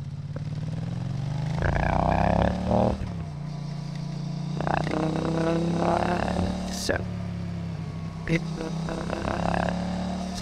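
Motorcycle engine sound run through AI speech enhancement, which turns it into warbling, human-like vocal sounds over the engine's drone. The engine pitch climbs for about two seconds, then drops about three seconds in, like a gear change.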